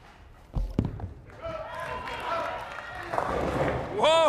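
Bowling ball landing on the lane with a thud about half a second in, then rolling down the wooden lane, with voices murmuring in the background.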